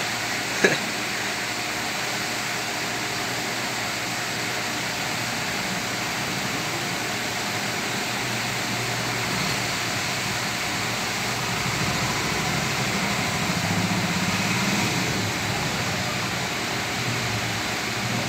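Steady background noise, an even hiss with a low hum, swelling slightly about two-thirds of the way through. A short laugh comes under a second in.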